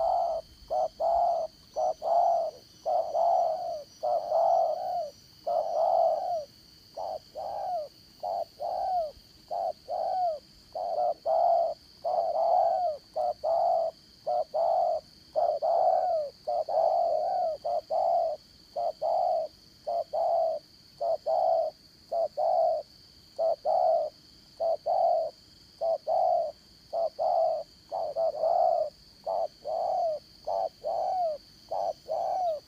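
Spotted doves cooing: a long, steady run of short low coos, about one to two a second, with brief breaks between phrases.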